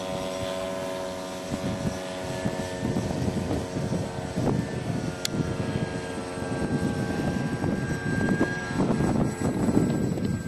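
Engine of a 1/3-scale radio-controlled Fokker Dr.I triplane model droning steadily in flight. From about a second and a half in it is increasingly buried under wind buffeting the microphone.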